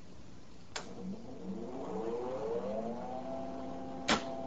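A switch clicks on about a second in, and the high-voltage power supply of a capacitor cabinet starts up with a whine. The whine rises in pitch and levels off to a steady tone as the supply charges the capacitor bank to four kilovolts.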